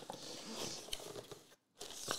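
Rustling and crinkling as a cardboard trading-card box and its wrapping are handled, with one small click about a second in and a brief break before the rustling picks up again near the end.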